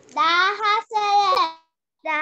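A child's voice in two short, drawn-out sing-song phrases.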